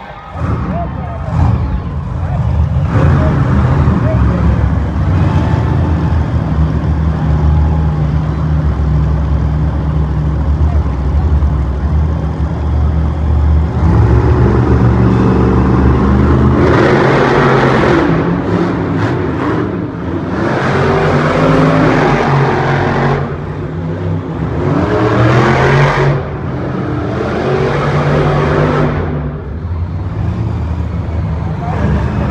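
Monster truck supercharged V8 engines running loud and deep as two trucks race, echoing around an indoor arena. From about halfway through come repeated long surges of louder, brighter noise as the engines are revved hard.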